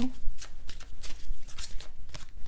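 A deck of tarot cards being shuffled by hand: a quick, irregular run of crisp card flicks and riffles.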